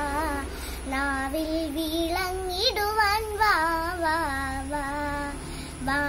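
A young girl singing a Malayalam devotional song solo, in long held notes that waver and slide in pitch.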